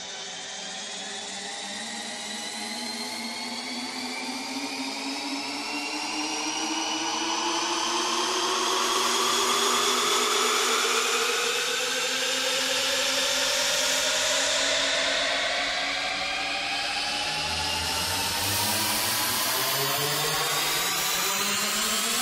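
Electronic house-music build-up: a long riser of several synth lines gliding slowly upward in pitch over a rushing noise wash, steadily growing louder with the drums dropped out, leading into the return of the beat.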